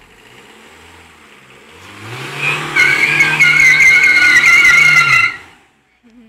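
Tata Indigo's engine revving up hard and holding high while its tyres spin and squeal in a rolling burnout. The squeal wavers in pitch, and engine and squeal both cut off suddenly near the end.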